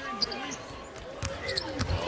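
A basketball being dribbled on a hardwood court, with several bounces in the second half.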